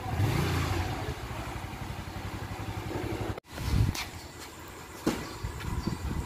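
Small motorcycle engine running steadily at low revs, a low even pulsing rumble. It cuts off abruptly about three and a half seconds in, leaving a quieter stretch with a couple of faint clicks.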